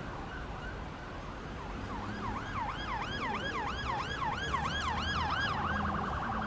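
Emergency-vehicle siren in a fast yelp, its pitch swooping up and down about three times a second, fading in and growing louder over a low traffic rumble.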